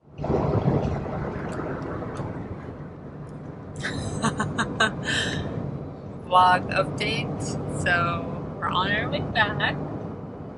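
Steady road and engine noise inside a moving car's cabin at highway speed. People talk and laugh over it from about four seconds in.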